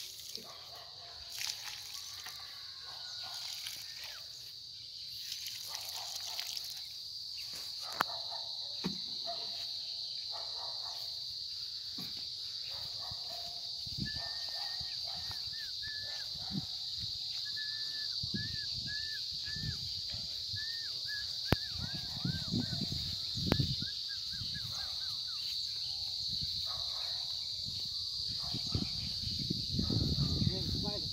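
Rural field ambience: a steady high-pitched insect drone throughout, with a run of short repeated chirps in the middle and faint distant voices. A few low thuds come near the end.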